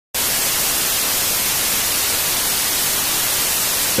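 Television static: a steady, loud hiss of white noise from an untuned analogue TV screen.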